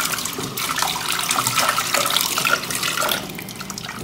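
Kitchen tap running into a pot in a stainless steel sink as hands rub and rinse it out, the water splashing in the pot; softer in the last second.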